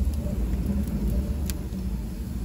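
Wood fire burning in an open hearth: a steady low rumble with a sharp crackle about one and a half seconds in.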